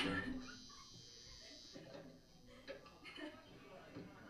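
Indistinct voices talking in a small live-music venue between songs. A short, louder sound comes right at the start.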